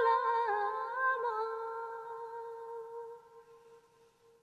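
A solo voice holds one long note of a Tibetan song, with a brief ornamental turn in pitch about a second in, then fades away after about three seconds into near silence.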